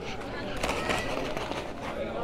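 Indistinct voices of people talking nearby, faint and broken, over a low steady rumble.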